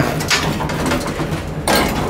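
Four-speed (four-panel telescoping) elevator door sliding closed, its panels rattling and clicking in their tracks over a steady low hum, with a louder clatter near the end.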